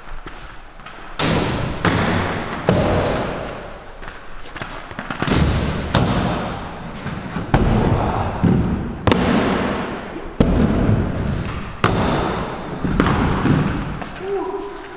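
Inline skate wheels rolling hard over a concrete floor and a wooden ramp, with repeated sharp thuds of landings and of skates hitting and sliding along box ledges, about one every second or two.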